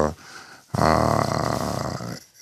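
A man's long drawn-out hesitation sound, an unbroken "uhh" held for over a second. It comes after a short pause mid-sentence, starting just under a second in.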